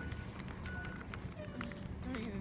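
Faint voices and a few light knocks over a low steady rumble.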